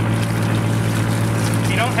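Research vessel's engine running with a steady low drone, under water from a deck hose running into a bucket of sediment.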